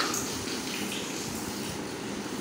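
A steady rushing noise, even and unbroken.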